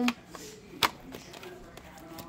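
Fingers handling a heart-shaped cardboard candy box, with one sharp tap a little under a second in and a few fainter small clicks around it.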